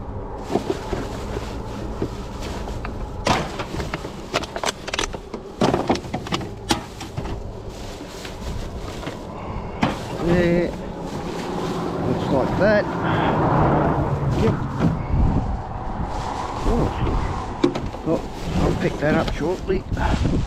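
Plastic rubbish bags rustling and crinkling as they are handled and rummaged, with scattered clicks and knocks of cans and bottles. A broad rushing noise swells up in the middle.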